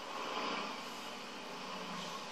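Volkswagen Beetle's engine running on a film soundtrack, heard through a television speaker and picked up by a microphone in the room.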